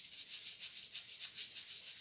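Oil pastel rubbed against paper in quick, repeated strokes, a dry scratchy sound.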